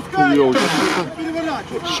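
Men's voices talking and calling out, with a short hiss about half a second in.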